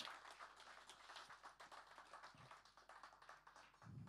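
Faint scattered applause from a small audience, thinning out and dying away over a few seconds.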